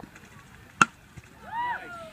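Youth baseball bat striking a pitched ball: one sharp, ringing crack about a second in. Voices start shouting near the end.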